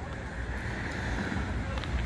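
Road traffic noise: a steady rush of passing vehicles that grows slightly louder.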